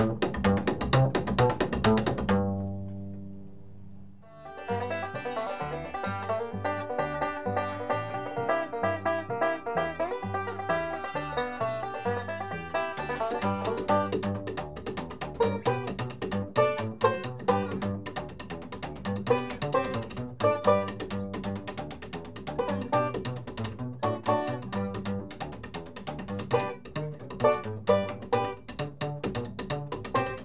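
Upright bass played with slap technique: a quick run of string pops and palm slaps, then one low note left ringing and dying away. About four seconds in, a five-string banjo and the slapped upright bass start playing a tune together, the bass's slaps growing busier about halfway through.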